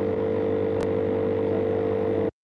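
A steady mechanical hum holding one pitch, with a faint click a little under a second in.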